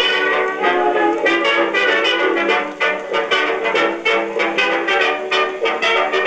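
A 1929 Edison Diamond Disc hot jazz record playing on an Edison B-200 Diamond Disc phonograph: an instrumental passage led by trumpets and trombones over a steady dance beat. The sound is thin, with no deep bass.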